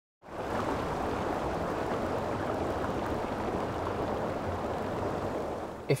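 A steady rushing noise like rain or running water, starting about a quarter second in and easing off slightly just before the end.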